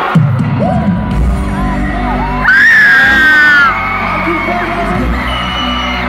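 Stadium concert crowd screaming as pop music with heavy bass starts abruptly through the PA. Near the middle, one loud, high scream is held for about a second over the music.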